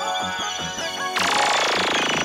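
Music, then about a second in a sudden electronic sound effect: a rapid machine-gun-like stuttering buzz that sweeps downward in pitch.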